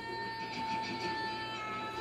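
A woman's long scream held on one high, steady pitch, sagging slightly toward the end: a labour cry.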